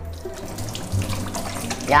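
Water running from a kitchen wall tap over hands and splashing into a steel sink, a steady hiss.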